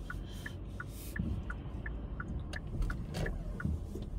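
A car's turn-signal indicator ticking steadily, about three ticks a second, over the low rumble of the car inside the cabin while it waits to pull out.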